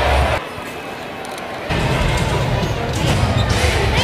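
Basketball being dribbled on a hardwood court, with arena music playing over the PA and voices from the crowd. The music's heavy bass cuts out about half a second in and comes back about a second later.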